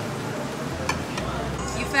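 Steady background noise of an open-air restaurant with faint distant chatter, and a single light click about a second in.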